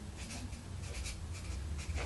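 Writing on paper: a pen scratching in a series of short strokes, over a low steady hum.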